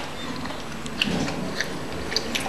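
A person chewing a mouthful of hard food, with faint, scattered crunches.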